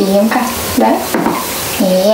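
A woman's voice cooing to a cat in short, sing-song bursts that swoop up and down in pitch, over a steady hiss.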